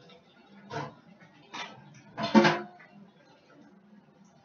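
Three short knocks, a little under a second apart, the third the loudest and doubled like a clatter.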